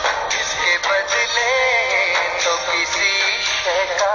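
A song: a singer holds long, wavering notes with vibrato over instrumental backing with a steady beat.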